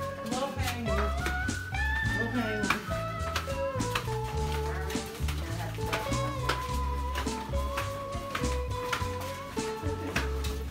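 Background music with a deep bass line and a pitched melody line above it.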